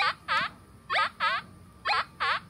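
Nokta Triple Score metal detector's audio response in Relic mode with iron reject set to 5: pairs of short tones that swoop down and back up in pitch, about one pair a second as the coil is swung back and forth over the target. This is the iron sound, the sign of a big, deep piece of iron.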